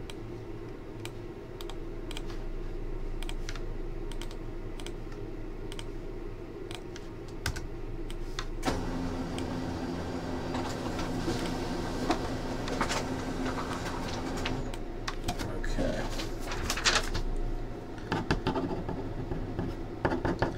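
Computer keyboard and mouse clicks, single clicks scattered and irregular, over a steady low hum that thickens about nine seconds in.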